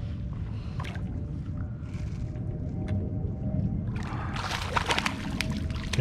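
A hooked red grouper splashing and thrashing at the water's surface as it is reeled up, starting a little after four seconds in, over a steady low rumble.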